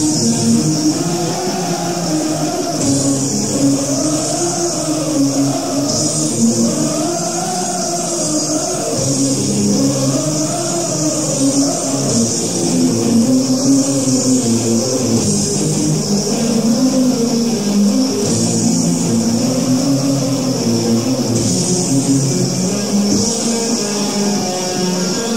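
Heavy metal band playing live, recorded from the hall: electric guitars play a slow, repeating melodic intro line over sustained chords, before any vocals come in.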